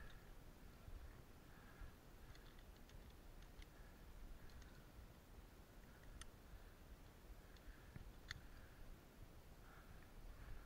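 Near silence with a few faint, scattered clicks of climbing gear being handled, among them an aluminium quickdraw carabiner, the clearest clicks about six and eight seconds in.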